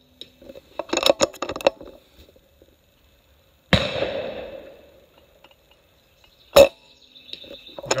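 Umarex Gauntlet PCP air rifle being shot: a quick run of clicks from the bolt being cycled about a second in, then two sharp shot reports a few seconds apart, the first fading over about a second.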